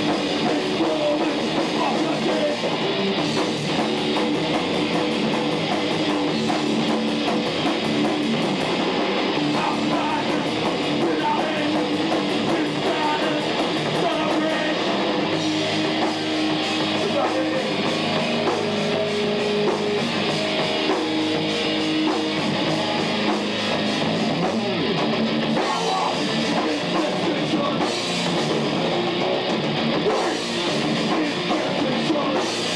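Heavy metal band playing live: distorted electric guitars over a drum kit at a steady loud level, heard through a camcorder's microphone.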